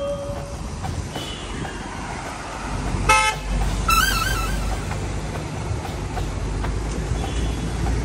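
Road traffic with a single short vehicle horn honk about three seconds in, followed by a brief warbling tone. A vehicle's low engine rumble builds through the second half.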